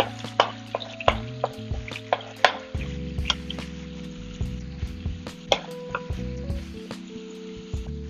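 Peeled tomatoes frying in hot olive oil in a pan: a steady sizzle with frequent short, sharp pops as the sauce spits.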